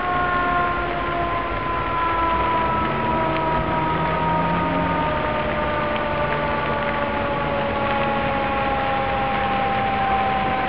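A siren slowly winding down, its chord of several tones falling gradually and steadily in pitch, over a constant rushing noise.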